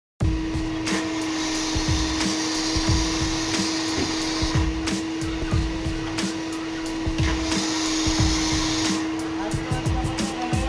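High-pressure washer running with a steady motor hum, with two stretches of spray hiss: one from about a second and a half in lasting three seconds, another shorter one near the end.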